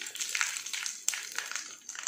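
A tempering fries in hot oil in a small iron kadai: dried red chillies and mustard seeds sizzle, with scattered sharp crackles, while a wooden spatula stirs them against the pan.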